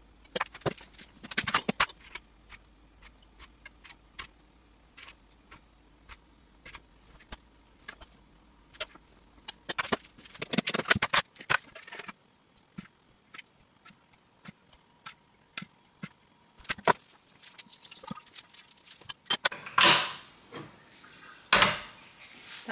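Irregular short, sharp clicks and knocks over a quiet background, bunched about a second in, again around ten to twelve seconds, and near the end, where the loudest is a longer, broader knock about two seconds before the end.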